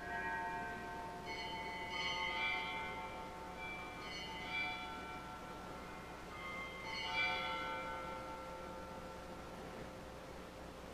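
Bells rung at the elevation of the chalice during the consecration of the Mass: several strikes about every two seconds, each left ringing on.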